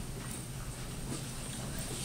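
Footsteps of shoes on a hollow wooden stage floor, a few light knocks over a steady low hall hum.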